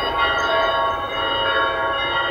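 Church bells ringing a continuous peal, many overlapping bell tones held steadily.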